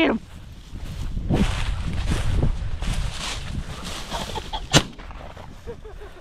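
A single shotgun shot about three-quarters of the way in, sharp and brief, after a few seconds of footsteps rustling through dry, matted grass.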